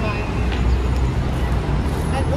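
Outdoor urban ambience: a steady low traffic rumble with faint voices of passers-by.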